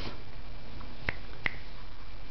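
Two short, sharp clicks about a third of a second apart, over a steady low background hum.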